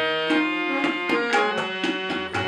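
Tabla and harmonium playing together: the harmonium holds sustained reedy chords under tabla strokes falling about four a second.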